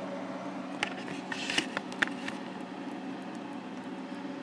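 Steady low hum of running bench equipment, with a few light clicks and knocks in the first half as a power cord and circuit board are handled.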